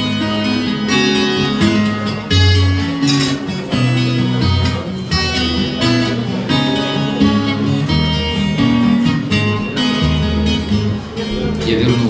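Twelve-string acoustic guitar strumming chords in an instrumental break between verses, the bass notes changing every second or so.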